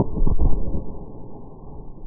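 Hand grenade detonating after being hit by a rifle bullet: a deep, dull boom, loudest in the first half-second, fading into a long low rumble.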